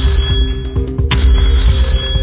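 Video slot game music with a ringing telephone bell in two bursts, the second about a second in: the banker calling in with an offer.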